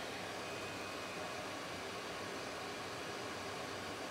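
xTool SafetyPro fume extraction system, the IF2 inline fan drawing laser smoke into the AP2 air purifier, running at working speed. It makes a steady, even rush of fan air with a faint hum under it, which is noticeable but not loud enough to need headphones.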